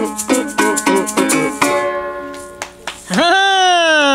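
Llanera cuatro strumming with maracas shaking, closing out a song: the final strummed chord rings out about two seconds in, with a few last loose maraca shakes. About three seconds in, a voice lets out a long, falling exclamation.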